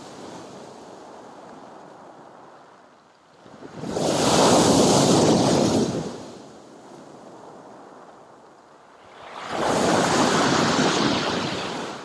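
Sea surf breaking on a pebble shore and against a concrete pier footing. Two loud crashing surges, one about four seconds in and one near the end, with quieter washing of water between them.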